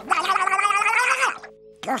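Donald Duck's cartoon duck voice squawking an unintelligible outburst for about a second and a half, then breaking off.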